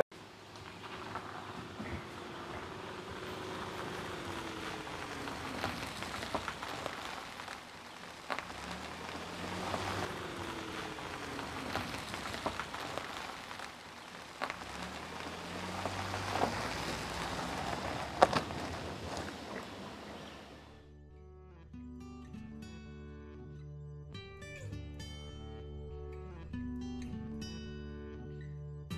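A Ford Transit Connect van towing a small trailer drives off: steady engine and tyre noise with scattered clicks, and soft plucked-guitar music coming in under it. From about 21 seconds in, the vehicle sound drops away and only the guitar music is left.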